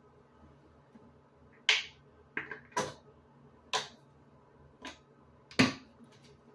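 Six sharp smacks at irregular spacing over about four seconds, the first and last the loudest, over a faint steady hum.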